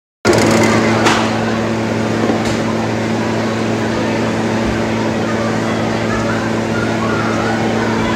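A steady machine hum, a low droning tone with overtones over a background hiss, starting just after a short silence at the start, with a single knock about a second in.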